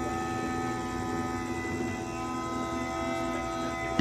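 Bulgarian gaida (bagpipe) holding a steady, unchanging reedy drone with no melody moving.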